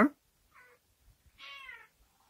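A domestic cat meows once, a short call lasting about half a second near the end, after a fainter brief sound about half a second in.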